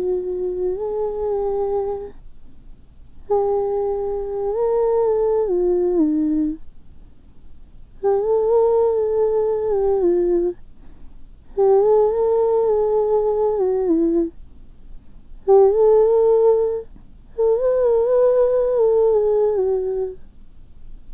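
A woman humming a slow melody in six phrases with short pauses between them. The pitch steps up and down and drops at the end of each phrase.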